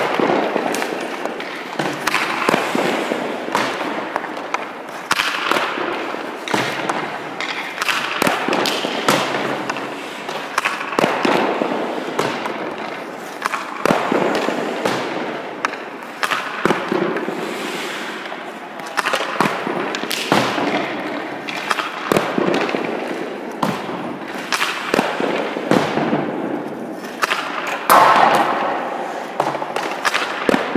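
Hockey pucks shot one after another with a stick: repeated sharp cracks every second or two as the stick strikes the puck and the puck hits the goalie's pads, the net or the boards, each echoing through a large ice rink.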